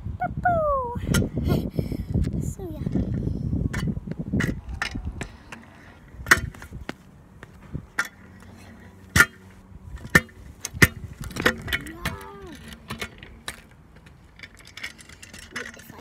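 Close rumble and rustle from the phone being handled for about the first four seconds, then a handful of sharp metallic clicks and clanks from a stunt kick scooter's deck and wheels on tarmac, spaced about a second apart.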